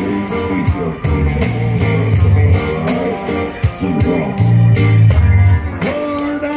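Live reggae busking: an amplified electric guitar with deep bass notes over a hand drum keeping a steady beat.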